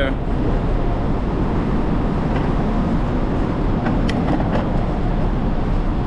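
Steady wind and tyre noise on a bicycle-mounted camera microphone while riding a paved bike path, with a couple of faint clicks about two and four seconds in.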